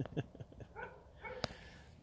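A man's laughter trailing off in a few short breathy pulses, followed by faint, quiet sounds and a single sharp click about one and a half seconds in.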